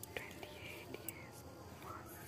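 Faint, low voices, whispered or spoken under the breath, with a couple of short clicks.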